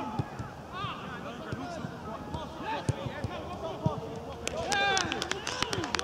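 Players' voices carrying across an open football pitch: scattered shouts and calls, one louder shout about five seconds in, with a few sharp knocks in between.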